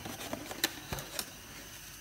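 Kraft cardboard takeaway box being opened by hand: a handful of light clicks and scrapes as its folded flaps are pulled apart, the sharpest about two-thirds of a second in.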